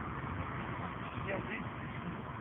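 A steady low rumble of outdoor background noise, with a faint, indistinct voice briefly about one and a half seconds in.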